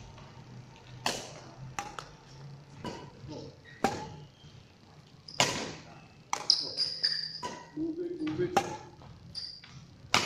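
Badminton racket strings striking a shuttlecock during a rally, in sharp, irregular hits about one a second, each ringing briefly in the hall.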